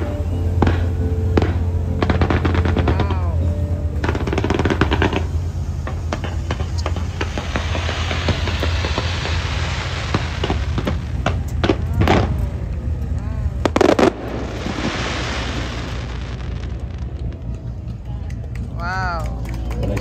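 Fireworks display: rapid crackling pops and bangs with hissing rocket launches, and the loudest bang about fourteen seconds in. A steady low hum runs underneath.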